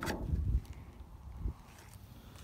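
Handling noise from a phone moved close over a gun stock: low rumble and soft knocks, with one soft thump about one and a half seconds in.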